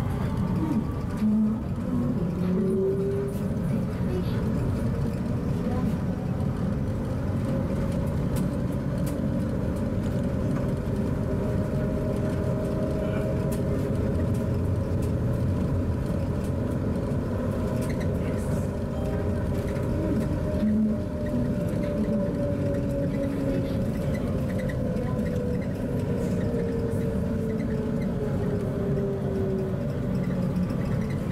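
Cabin running noise of a Punggol LRT automated people-mover train: rubber tyres rumbling on the concrete guideway under a steady motor whine. Near the end the whine falls slowly in pitch as the train slows toward a station.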